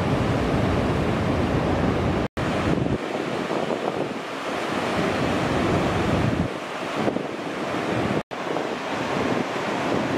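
Large ocean waves breaking, a steady roar of surf with wind rumbling on the microphone. The sound drops out for an instant twice, about two seconds in and again about eight seconds in.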